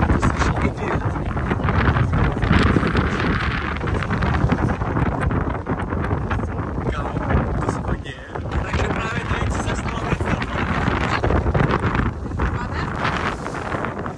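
Wind buffeting a phone's microphone aboard a small inflatable boat moving through choppy sea, with water rushing and splashing along the hull. The noise rises and falls in gusts.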